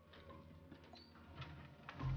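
Near silence with a few faint clicks and knocks as a wooden cupboard door and its latch are handled and the door swung open, over a low steady hum.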